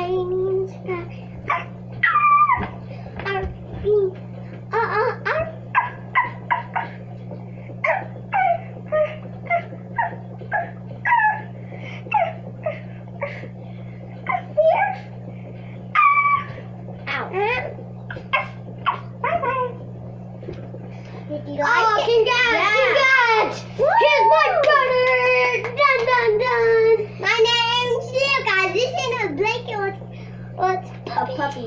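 Children's voices making a string of short, high-pitched vocal sounds and giggles without clear words, then, from about two-thirds of the way in, a denser stretch of sing-song vocalizing, over a steady low hum.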